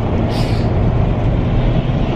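Steady low rumble of road and engine noise inside a moving minivan's cabin, its tyres running on a wet road.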